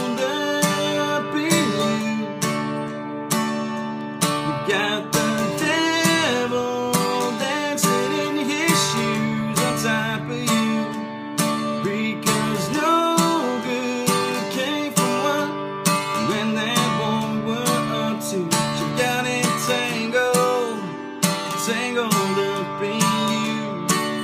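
Taylor acoustic guitar strummed in a steady rhythm, accompanying a song.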